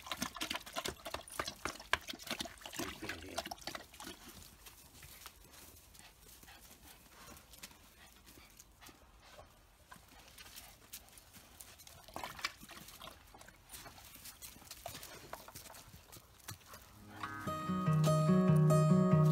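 A dog lapping water from a bowl: a quick run of wet clicks for the first few seconds, then only faint scuffs. Acoustic guitar music fades in near the end.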